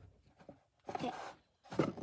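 Faint rustling and small ticks of trading cards and plastic card sleeves being handled.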